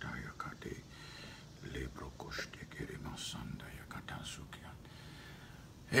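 A man whispering softly, with no voiced words.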